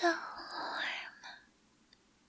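A woman's close-miked breathy whisper, lasting about a second and a half, with no clear words.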